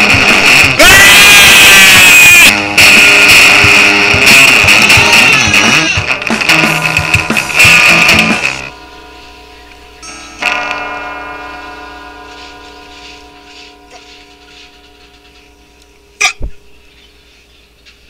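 Loud emo rock song with guitar and bass that stops suddenly about nine seconds in. A moment later a single guitar chord is struck and rings out, fading away, and a sharp click comes near the end.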